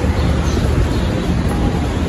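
Steady low rumbling noise with a light hiss and no distinct events.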